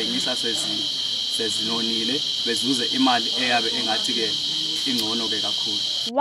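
A steady, high-pitched insect drone that holds one pitch throughout, with a man's voice talking over it.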